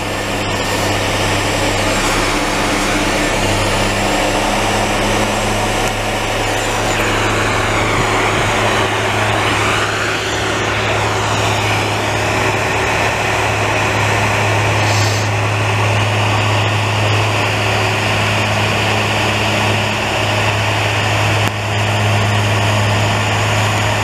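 Larue snowblower's diesel engine running steadily under load as its blower throws snow through the chute into a dump truck: a loud, continuous drone with a rushing hiss of blown snow, and a wavering whine near the middle.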